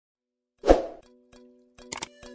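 Channel intro sound effect: a single hit about two-thirds of a second in, which dies away over a quarter of a second. Then a few held musical notes sound, with faint clicks.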